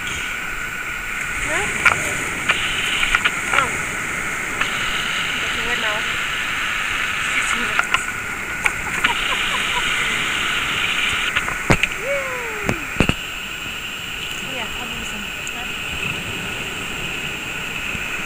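Steady wash of sea water on a rocky shore, with a few short clicks and brief faint voice-like calls over it.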